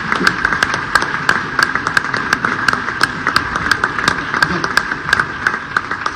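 Scattered hand clapping from a group, several sharp claps a second, over low crowd murmur.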